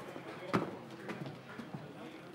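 A single sharp knock about half a second in, over faint background voices.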